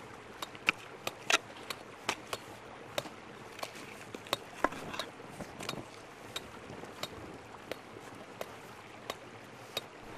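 Pickaxe striking stony earth and rock while digging out a whetstone stone: a string of sharp, irregular knocks, roughly two a second.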